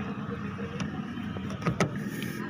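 Long screwdriver working a screw into the plastic base of a Tata Nano's outside door mirror: light clicks and scraping of metal on the screw and mount, with two sharp knocks close together near the end. A steady low hum runs underneath.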